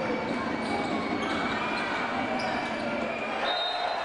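Indoor basketball game: the ball bouncing on the hardwood court over the voices of the crowd filling the hall. Near the end a referee's whistle blows, calling a personal foul.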